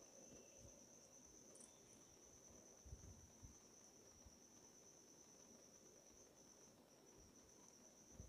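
Near silence: room tone with a faint, steady high-pitched whine throughout and a couple of soft knocks about three seconds in.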